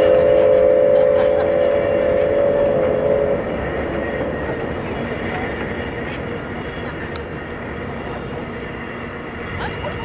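Steam locomotive whistle sounding a held chord of several tones, cutting off about three seconds in. The steam train then runs on across a steel girder bridge, its rumble steadily fading as it moves away.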